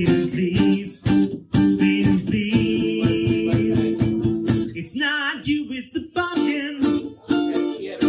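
Acoustic-electric guitar strummed in a steady rhythm, with a man singing over it, holding one long note through the middle.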